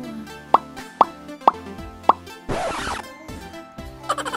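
Background music with four quick cartoon-style pop sound effects, each a short upward-gliding bloop, about half a second apart. A half-second burst of hiss follows and cuts off suddenly.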